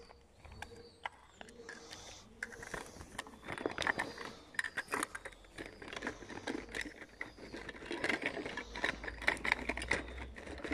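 A bag and clothing being rummaged and rearranged close to the microphone: irregular rustling of fabric with quick clicks and knocks. The handling is sparse at first and grows busier about two and a half seconds in.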